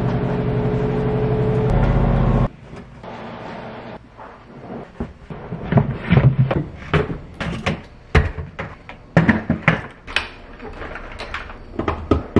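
A steady mechanical hum that cuts off suddenly about two and a half seconds in. Then a run of irregular knocks and clatters as towels are folded and baskets are set on a counter and shelf.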